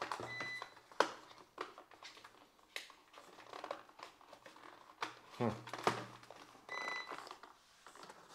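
Cardboard packaging being handled and pried open by hand: scattered rustling, scraping and a few sharp taps of the box flaps and inserts. Two brief high-pitched beeps sound, one near the start and one near the end.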